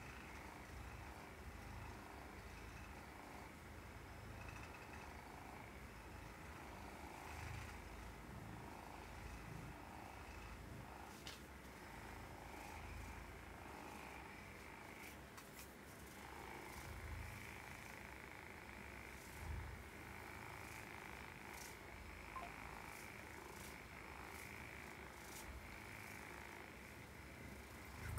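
A handheld percussion massage gun running with a faint, steady buzz while it is held against the shoulder and upper back.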